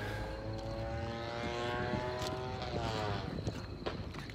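An engine droning steadily, its pitch dropping slightly about three seconds in, with a sharp click just before the end.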